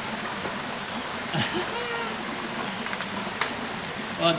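Steady outdoor background hiss, with a short voice-like sound about a second and a half in and two sharp clicks near the end.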